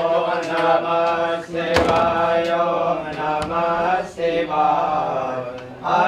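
Male voices chanting a Hindu mantra in a drawn-out, sung style, with long held notes broken by short pauses for breath about two seconds in and again near four seconds.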